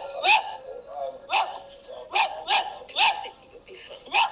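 A dog barking repeatedly, about six short barks in quick succession.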